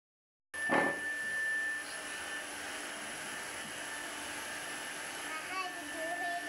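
Electric air pump starting up suddenly about half a second in, then running with a steady whirring hiss and a high whine. A voice comes in near the end.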